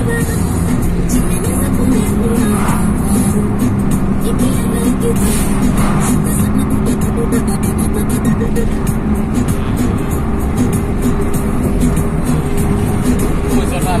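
Music playing inside a moving car's cabin, over the steady rumble of engine and road noise.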